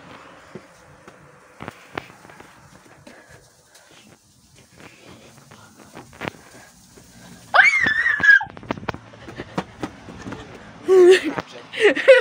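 Faint knocks and clicks of footsteps and a handheld phone being carried through a house. About eight seconds in comes one loud, high, wavering squeal lasting under a second. A woman's voice starts near the end.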